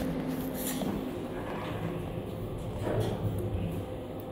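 Low, steady hum inside a moving elevator car, with faint clicks and rustle from a handheld phone.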